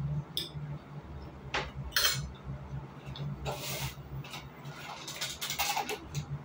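A metal fork clinking and scraping on a plate of dumplings as someone eats, in a series of separate sharp clicks. Near the end, a clear plastic food container crackling and clicking as it is picked up.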